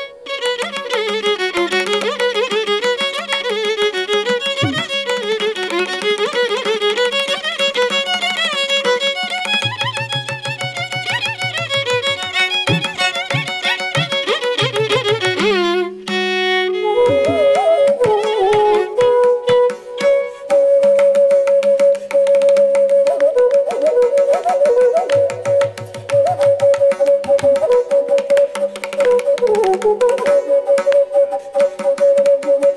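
Carnatic violin playing fast, heavily ornamented phrases over a steady drone. After a brief pause about halfway through, a bamboo flute takes over with long held notes and gliding ornaments.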